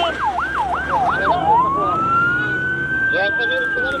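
Emergency-vehicle siren, loud: four quick yelping sweeps in the first second and a half, then a slow rise into a long high wail that begins to fall near the end.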